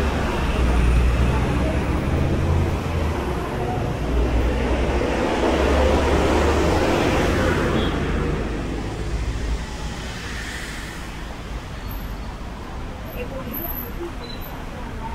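Street traffic: a motor vehicle's low rumble, loud for the first eight seconds or so and then fading away, with people talking in the background.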